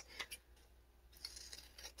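Scissors snipping through a sheet of paper: a few faint, short cuts.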